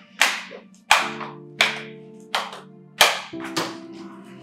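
Slow handclapping: about six loud, evenly spaced claps, roughly two-thirds of a second apart, over held music notes that come in about a second in.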